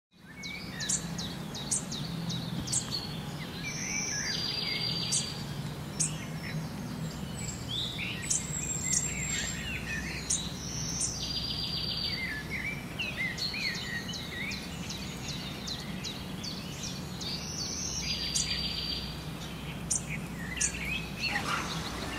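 Small songbirds calling and chirping, with a buzzy trill that comes back about every seven seconds, over a steady low hum.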